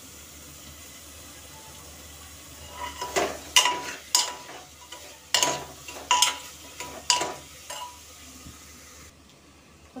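Paneer and peas frying in masala in a pressure cooker, stirred with a steel spoon: a steady sizzle, then from about three seconds in, about seven clanks and scrapes of the spoon against the pot with a faint ringing.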